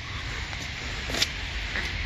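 Steady outdoor background noise with a low rumble, and one light click a little past a second in.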